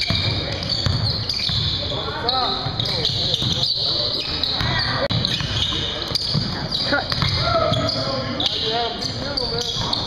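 Basketball game sounds in a large gym: a ball bouncing on the hardwood court, sneakers squeaking in short chirps, and players calling out.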